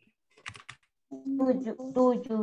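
A few quick computer keyboard key clicks about half a second in, then a person's voice from about a second in.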